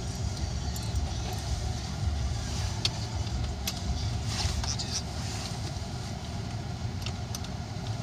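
Car engine running at a standstill, heard from inside the cabin as a low, steady rumble, with a few faint clicks over it.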